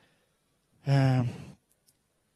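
A man's short wordless vocal sound into a handheld microphone, about a second in: one held, steady-pitched hesitation vowel lasting under a second between sentences.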